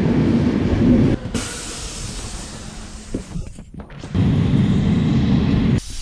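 Regional passenger train at a station platform, running with a loud low rumble. About a second in, a loud hiss of air takes over for a couple of seconds, and the rumble returns near the end.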